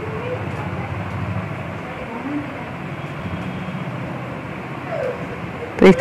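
Steady background hum and hiss with a few faint, brief rising and falling tones, like distant voices or an animal; a woman starts speaking at the very end.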